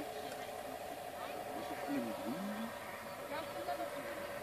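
Indistinct voices in the background over a steady mid-pitched hum.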